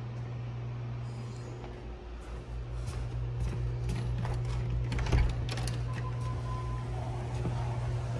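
A door handle and latch clicking as a glass door is opened, with knocks and a louder thud about five seconds in, over a steady low hum.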